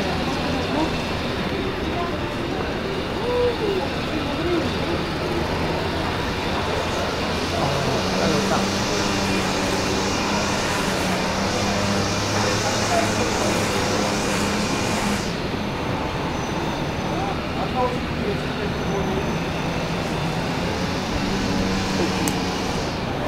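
A vehicle engine running with a low steady hum, coming in about a third of the way through and fading about two thirds through, then faintly again near the end. Under it is a constant rushing background noise and the scattered chatter of a crowd.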